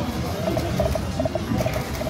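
Video slot machine sound effects as the reels spin: a quick run of short electronic beeps at one pitch, several a second, over a steady low casino hum.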